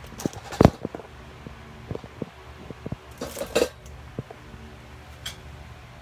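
Handling noise of a phone being moved and propped up: scattered knocks and clicks against hard surfaces, with one louder thump about half a second in and a few more around the middle, over a steady low hum.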